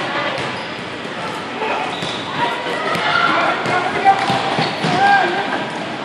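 Echoing din of a large indoor sports hall: scattered children's voices and shouts, with repeated thuds of balls bouncing, a louder shout about five seconds in.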